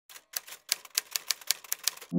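Typewriter keystroke sound effect: a quick, even run of about ten sharp key clicks, roughly five a second.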